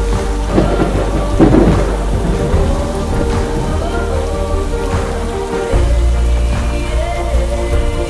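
Steady rain with a rumble of thunder about half a second to two seconds in, over a song's instrumental of sustained chords and deep bass.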